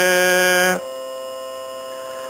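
A man chanting Sanskrit holds the last syllable of 'dharma uvāca' on one steady note for under a second. The voice then stops and a steady hum with several constant tones carries on alone.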